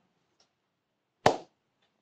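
Near silence during a pause, broken about a second in by one short sharp mouth click with a brief breathy tail, a man drawing a quick breath before speaking.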